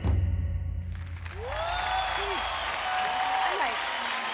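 Backing music ends on a deep bass hit, then a studio audience and judges break into applause from about a second in, with cheering voices rising and falling over the clapping.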